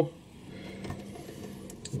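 Faint, steady hum of a camera's zoom motor, with a couple of soft clicks; otherwise quiet room tone.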